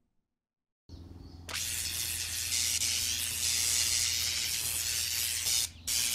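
Electric hissing with a steady low hum, a lightning sound effect building up before the strike. It starts faintly about a second in and jumps louder half a second later.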